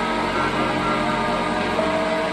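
Ambient meditation drone music built on the 963 Hz solfeggio frequency: layered steady synthesizer tones held without a melody, with a new note coming in near the end.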